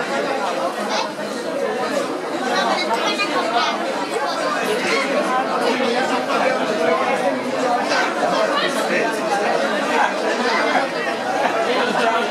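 Indistinct chatter of many voices at once, with no single speaker clear: spectators on the sideline and young rugby players talking and calling out.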